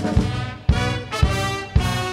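Instrumental break of a march-time song: brass playing chords over a steady beat of about two strong hits a second.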